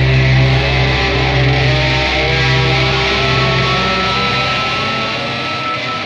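Rock music with guitar, ending on a held chord that slowly fades; the bass drops away near the end.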